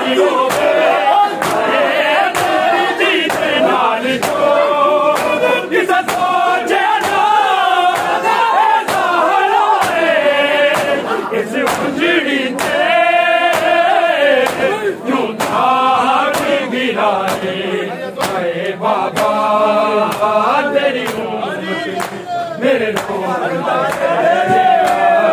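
Men's voices chanting a noha (Shia mourning lament) in unison, over a steady rhythm of sharp slaps from hands striking bare chests in matam, a little more than one slap a second.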